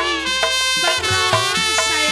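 Betawi gambang kromong ensemble music: a held, melodic lead line moving from note to note over regular percussion strikes.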